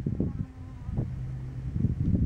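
An insect buzzing close to the microphone in short spells at a low, steady pitch, over wind rumbling on the microphone.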